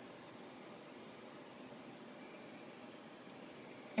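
Faint steady background hiss, with no distinct sound event.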